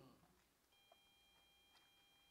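Near silence, with a very faint steady high tone that starts a little under a second in.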